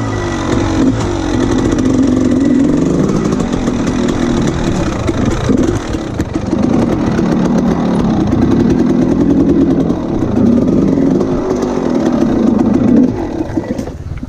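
Dirt bike engine running at low speed, its pitch rising and falling with the throttle as the bike picks its way over rocks. The engine eases off near the end.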